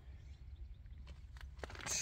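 Quiet outdoor background in a lull between voices: a low, steady rumble and faint hiss, with no engine running.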